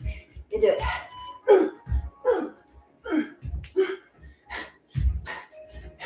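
A woman's short voiced exhalations, each dropping in pitch, about one a second in time with her strikes, over dull thumps of bare feet landing on an exercise mat.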